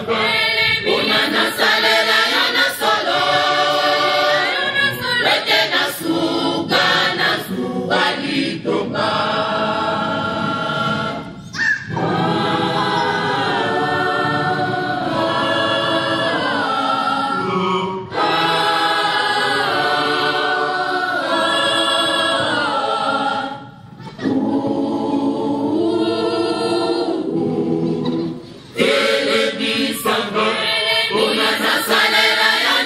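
A large mixed choir of men's and women's voices singing in harmony, phrase after phrase, with a few brief breaks between phrases.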